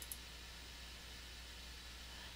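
One faint computer mouse click right at the start, then a quiet steady hiss with a low hum underneath.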